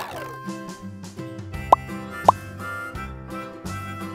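Bouncy children's background music with cartoon sound effects: a quick falling swoop at the very start, then two short rising 'plop' blips about half a second apart near the middle.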